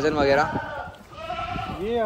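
Sojat goat bleating, a quavering call that breaks off about half a second in.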